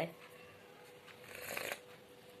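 A short slurping sip of hot tea from a glass cup, about a second and a half in.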